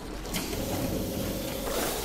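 A mechanical sound effect with a hiss, starting about a third of a second in and lasting nearly two seconds, over a low steady hum.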